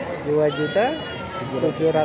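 A sheep bleats once about a second in, a short call that rises sharply in pitch, over men talking.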